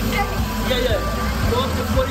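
Double-decker tour bus engine idling with a steady low rumble, under a man's voice talking.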